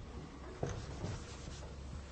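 Faint sound of chalk writing on a blackboard, with one light tap about halfway through.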